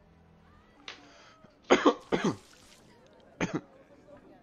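A person coughing: a light cough about a second in, two loud harsh coughs close together around two seconds, and a short one near the end.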